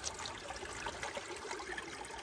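Shallow creek water trickling over rocks, a steady close-up babble.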